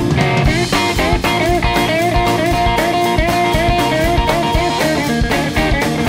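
Rock and roll band playing an instrumental break: a lead electric guitar on a gold-top Les Paul-style guitar plays a solo of short notes with repeated upward string bends, over bass guitar and drum kit.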